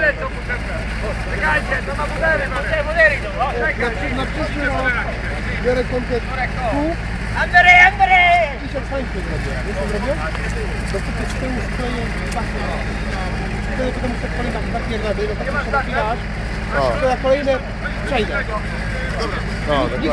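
Volvo BV 202 tracked vehicle's four-cylinder petrol engine running steadily at a low, even hum.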